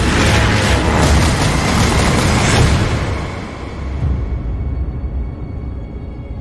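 Loud, dense battle noise of heavy machine-gun fire and booms mixed over music. It dies away after about three seconds, leaving sustained music with steady held tones.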